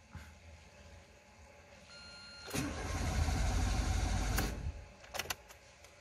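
Starter motor cranking the Renault Logan 1.6's four-cylinder engine for about two seconds, starting about halfway through; the engine turns over but does not catch.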